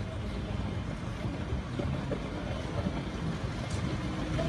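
Low, steady rumble with faint voices in the background.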